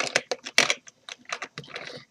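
Small plastic makeup containers clicking and clacking against each other and a hard surface as they are put down and picked up, a quick irregular run of sharp clicks.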